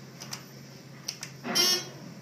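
Elevator alarm button pressed, with a few light clicks, then a short buzzing tone about a second and a half in that lasts about a third of a second.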